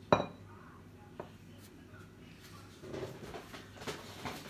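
Kitchenware handled on the counter: a sharp clink of glass just after the start, a lighter knock about a second later, then faint handling noise.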